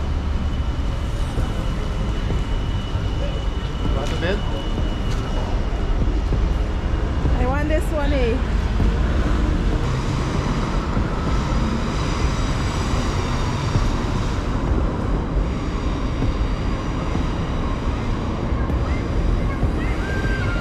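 Busy street ambience: road traffic running steadily past, with a constant low rumble and indistinct voices around. A short wavering pitched sound rises and falls about eight seconds in.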